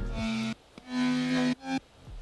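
Monophonic synth lead from the Serum soft synth playing three notes with short gaps between them, each held at a steady pitch without vibrato.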